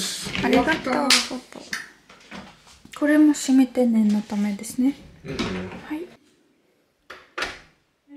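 A man talking, then near the end a single short sharp knock as an interior door is shut.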